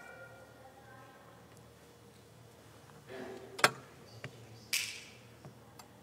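Quiet hall room tone with no speech. About three and a half seconds in there is a brief soft sound followed by a single sharp click, and about a second later a short breathy hiss, with a few faint ticks.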